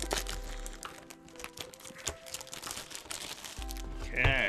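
Crinkling and clicking of a candy cane box's packaging being handled and opened, over soft background music with long held notes.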